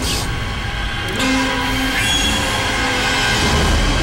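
Dramatic background score for a shock moment: a loud, harsh, sustained screeching wash over a low rumble, with a few held tones coming in after about a second.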